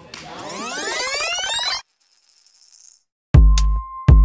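A produced sweep sound effect: many tones climbing in pitch together for nearly two seconds, cutting off suddenly, followed by a faint high shimmer. Near the end a deep bass beat hits, opening the intro music.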